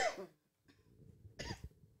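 A woman coughing into her fist, two coughs: one at the start and a weaker one about a second and a half in.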